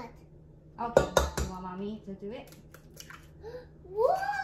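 A few sharp knocks against a stainless steel mixing bowl, about a second in, as an egg is tapped and cracked into it. Fainter clicks follow, with a child's voice in between.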